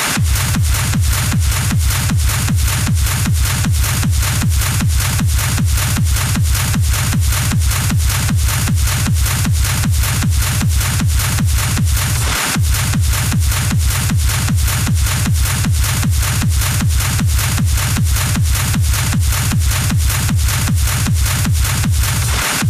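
Hard techno mixed live from DJ decks: a steady, fast kick drum under a constant bright wash of hi-hats and noise. The kick drops out briefly about twelve and a half seconds in, then returns.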